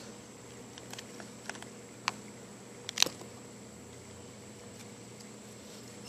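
Light clicks and taps from a smartphone being handled and propped against a wooden post, a sharper tap about three seconds in, over a faint steady background hiss.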